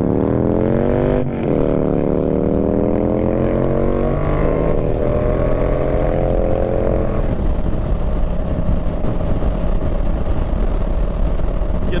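Yamaha MT-07 parallel-twin engine, fitted with an aftermarket Yoshimura exhaust, accelerating through the gears. Its note climbs, drops briefly at two upshifts about one and four seconds in, climbs again, then settles to a steady cruise about seven seconds in. Wind rushes over the microphone throughout.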